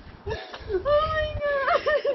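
A woman's high, drawn-out, wavering whimpering cry that breaks up near the end: she is crying, overcome with emotion.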